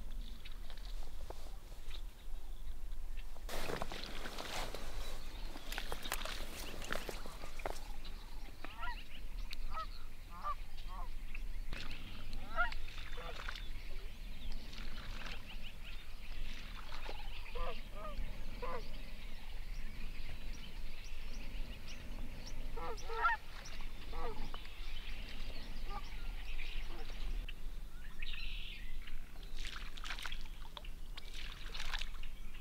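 A flock of geese honking in flight: many short calls overlapping, starting about nine seconds in and running until near the end. A few seconds of rustling noise come before them, about four seconds in.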